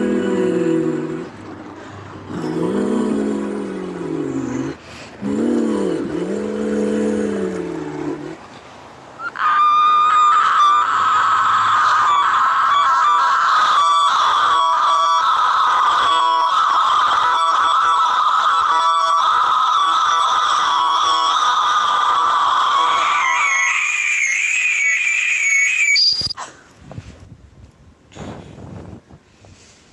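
A woman's voice vocalizing without words: three low swooping sounds, each a couple of seconds long, then a single very high sung note held steadily for about fourteen seconds. Near the end the note leaps higher with a wavering pitch and cuts off suddenly.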